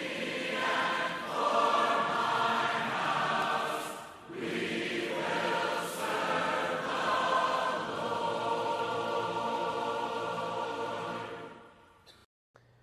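A choir singing in two phrases, with a short break about four seconds in, fading out near the end.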